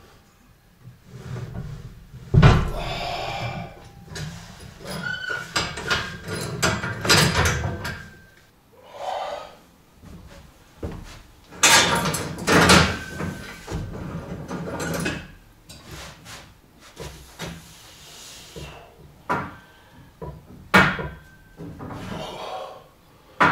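Heavy knocks and clanks from a plate-loaded lever strength machine and its wooden platform as the loaded lever is worked and set down, with the loudest bangs about two seconds in, in the middle and near the end.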